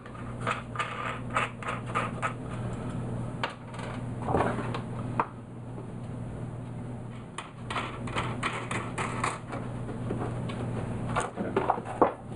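Small metal and plastic clicks and rattles as a nut is threaded by hand onto an eyebolt through plastic roof flashing and the flashing is handled. The clicks come in short clusters with pauses, over a steady low hum.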